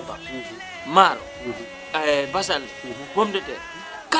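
A man talking, with faint background music underneath.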